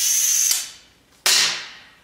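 Compressed-air vacuum ejector of a vacuum gripper hissing steadily with a high whistle, cutting off about half a second in. A little over a second in comes one sudden loud sound that dies away over about half a second, as the thin ribbed metal sheet comes down onto the table.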